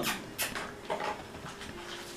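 Quiet handling of a paper greeting card: a sharp click about half a second in, then a few faint rustles and ticks as the card is opened.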